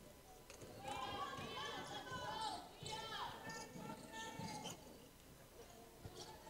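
Faint gym sounds: a basketball being dribbled on a hardwood court with players' footsteps, under distant voices calling out.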